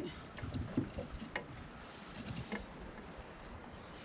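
Faint scattered knocks and rustling as a large catfish is handled in a landing net on a boat deck.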